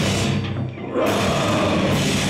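Heavy metal band playing live: distorted electric guitars, bass and drum kit. About half a second in the music drops away into a brief break, and the full band comes back in together about a second in.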